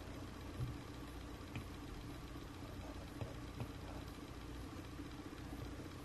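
Steady low background hum with a low rumble under it, and a few faint light taps.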